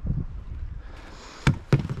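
Two sharp knocks about a quarter second apart, a second and a half in, over faint background noise.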